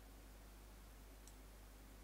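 Near silence: quiet room tone with a low steady hum and one faint computer-mouse click a little past a second in.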